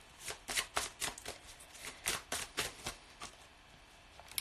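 Tarot cards being shuffled by hand: a quick run of card-on-card strokes, about four or five a second, that stops a little before the end.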